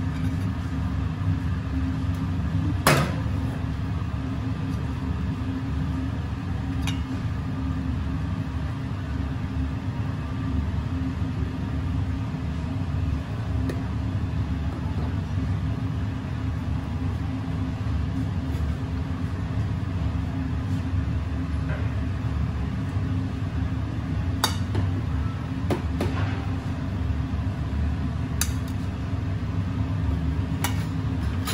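A steady low rumble of kitchen equipment, with a few sharp clinks of stainless steel bowls being handled: one about three seconds in and several more near the end.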